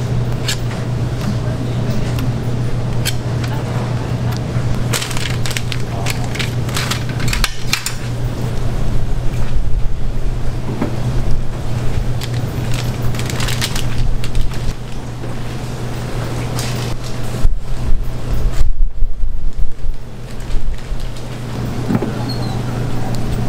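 Steady low hum of kitchen equipment under repeated clinks, scrapes and knocks of metal utensils and a waffle iron being worked, with the knocks coming thickest in the last few seconds.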